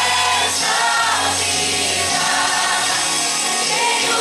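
Mixed choir of men and women singing a worship song together, with a low held note underneath that stops about halfway through.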